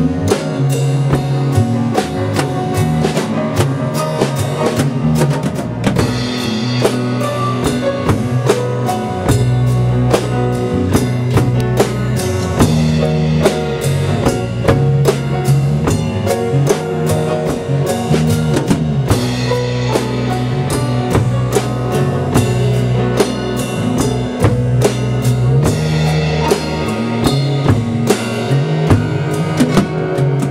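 A live band of acoustic guitar, piano, electric bass, drums and percussion playing a song, with a steady drum-kit beat over a walking bass line.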